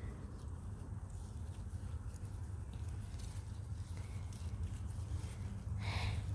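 Faint, irregular rustling and crackling of geranium foliage as a hand picks out dead leaves, over a steady low rumble.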